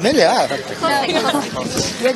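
Speech only: several people talking over one another.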